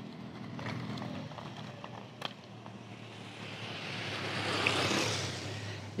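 Electric inline skates with hub-motor wheels rolling over asphalt, with a low steady motor hum under the rolling noise. A sharp click about two seconds in, and a rushing noise that swells and fades around four to five seconds in.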